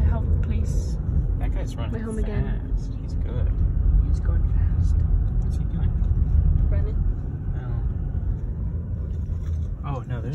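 Steady low road and engine rumble heard inside a moving car's cabin, swelling a little midway, with low voices talking over it.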